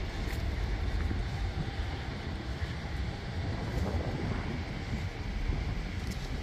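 Steady outdoor city ambience: a continuous low rumble of wind buffeting the microphone, with a faint hiss of the street behind it.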